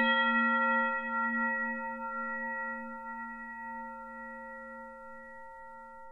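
Electric guitar's last note ringing out after the playing stops, one sustained pitched tone fading slowly away over several seconds.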